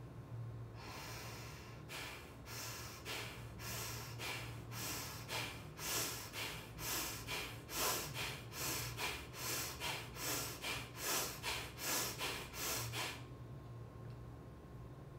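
A woman breathing sharply in and out through her nose with her lips closed, in a quick, regular rhythm of about two breaths a second: the Alba Emoting breathing pattern for anger. It starts about a second in, gets louder past the middle and stops shortly before the end.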